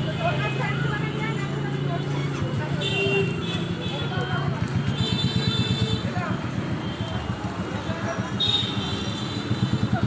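People talking over street traffic noise. From about halfway through, a fast, even low throb sets in, like a vehicle engine idling close by.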